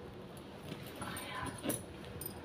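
A pet cat giving a faint, short mew about three-quarters of the way through.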